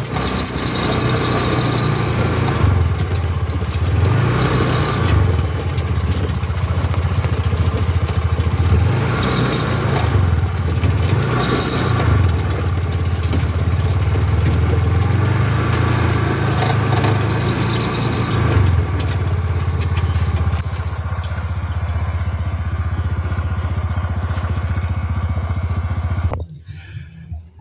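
Small motorcycle engine of a saleng (motorcycle with sidecar) running steadily while riding along a dirt track, swelling in loudness a few times.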